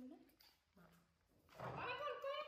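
Baby macaque giving a high-pitched call that starts about a second and a half in and wavers in pitch, after two short, faint vocal sounds near the start.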